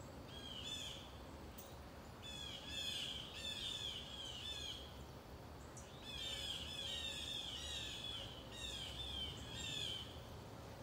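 A songbird singing: four phrases of rapid, down-slurred chirps repeated several times a second, each phrase lasting one to two seconds, with short pauses between.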